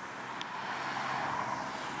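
A car driving past on the road, its tyre and engine noise swelling to a peak about a second in and then easing slightly.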